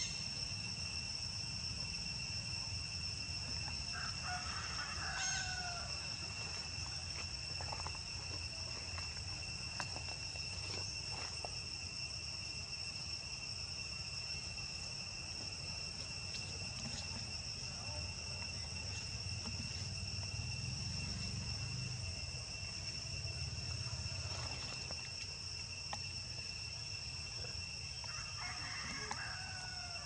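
A steady, high-pitched insect drone throughout. A rooster crows twice, about four seconds in and again near the end.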